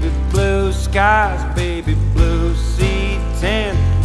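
Acoustic country song playing: a man sings long, bending notes over acoustic guitar.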